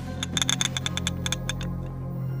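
A quick run of a dozen or so small mechanical clicks, like a ratchet, as a hidden mechanism in a cloisonné incense burner is turned by hand. The clicks stop about a second and a half in.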